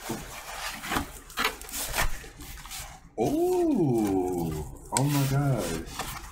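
Cardboard record mailer being pulled open, its flaps scraping and rubbing with a few sharp rips over the first three seconds. Then a man's voice makes two drawn-out wordless sounds, the first rising and falling in pitch, the second held steady.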